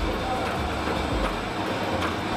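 Cookie production-line machinery running: a steady mechanical noise from the conveyor belt and dough-forming equipment, with a fast, low pulsing underneath.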